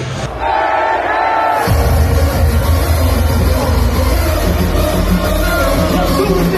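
Loud hardcore electronic music with a crowd: a held melody plays briefly on its own, then less than two seconds in a heavy, deep bass beat comes in and keeps going.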